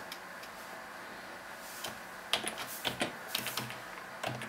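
Computer keyboard keys being typed: a short run of irregular keystroke clicks starting a little before halfway through, as a short word is typed.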